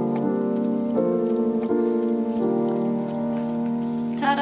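Background music of held chords with a slow melody, the notes changing about every second.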